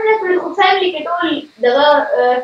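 A high-pitched human voice, with a short break about a second and a half in.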